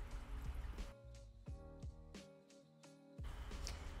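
Faint background music, a few soft sustained notes.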